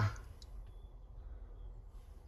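Quiet tractor-cab room tone: a faint steady low hum with a few small, faint clicks.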